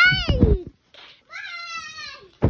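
Two drawn-out, high-pitched vocal cries, each sliding down in pitch. The first ends about two-thirds of a second in, over low rumbling handling noise. The second starts a little after halfway.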